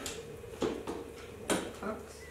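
Two short clicks of a metal spoon against a plastic mixing bowl and oil bottle, about a second apart, as cooking oil is measured out by the tablespoon.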